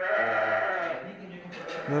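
A Dorper ram bleating once: one long call of about a second that trails off.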